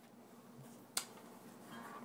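Faint handling noise from a phone being set up to record, with one sharp click about a second in.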